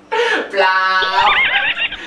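Horse whinny used as a comic sound effect. It is a loud, held high cry that breaks into a fast, wavering trill in its second half.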